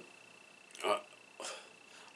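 A pause in a man's talk, broken by one short hesitation "uh" about a second in and a fainter vocal sound half a second later.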